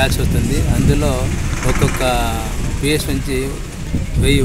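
A person talking over a steady low rumble of background noise.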